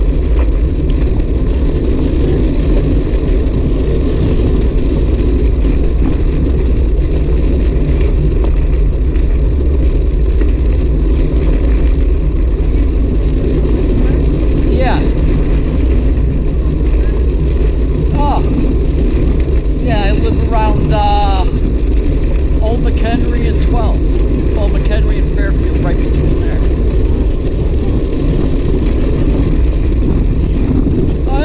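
Wind rushing over the microphone of a bicycle-mounted camera, with the tyres of road bikes rolling on rough chip-seal asphalt, at a steady level. Short wavering higher sounds come through it twice in the middle.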